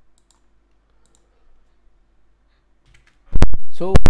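Faint, scattered computer mouse clicks in a quiet room, then near the end two loud, sharp knocks, and a man's voice begins.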